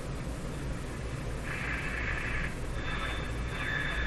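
Hallicrafters S-38 tube shortwave receiver being tuned down the AM broadcast band: hiss and static over a low hum come from its speaker. Faint, poorly received signal comes and goes, and a thin steady high whistle comes in during the second half as a weak station is reached.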